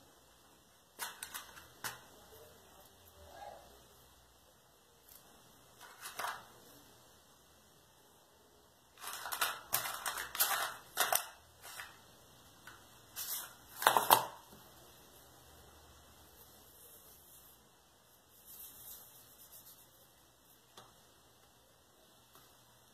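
Scattered sharp clicks and taps of small tools and pieces being handled and set down on a stone countertop during crafting work, with a busier run of clicks about halfway through and the loudest knock shortly after.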